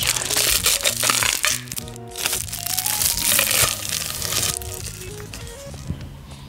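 Crinkling and rustling of food packaging in two long stretches, the second ending a little past halfway, over background music with a melody.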